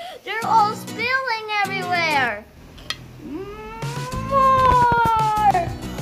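A young boy's excited, high-pitched wordless exclamations: a few short rising-and-falling cries, then one long drawn-out cry of about two seconds that rises and falls, over background music.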